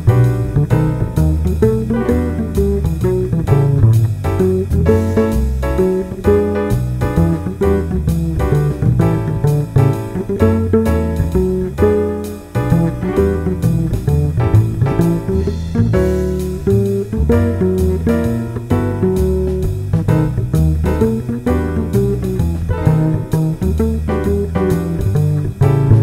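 Instrumental music with a guitar playing a run of plucked notes over a moving bass line.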